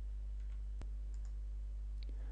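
Low, steady electrical hum of a narration recording's background, with one sharp click a little under a second in and a fainter one near the end.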